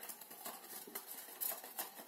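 Folded cardstock being handled and pressed together by hand: faint, irregular rustles and small taps of card against card.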